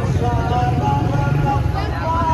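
Motorcycle engines running at low speed close by, a steady low rumble, with voices of a crowd over it.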